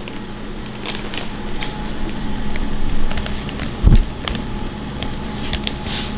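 A plastic zip-top bag of cut vegetables being handled, with scattered crinkles and clicks as the air is pressed out and the zipper worked, over a steady low hum. A dull thump about four seconds in.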